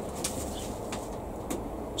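Quiet handling sounds of seed sowing: a few faint light clicks as fingers pick sweet pea seeds from a foil packet and press them into a plastic cell tray, over a steady low background rumble.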